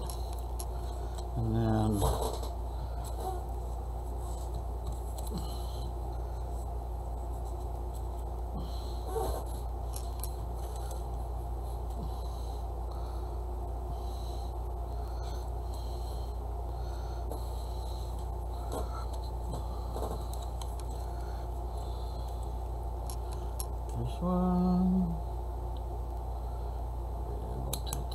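A steady low background hum, with faint ticks and rustles of paper and yarn being handled. A short voice-like sound, such as a hum or murmur, comes about two seconds in and again near the end.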